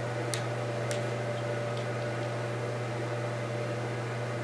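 Steady low electrical hum with a faint room hiss, and two faint clicks in the first second.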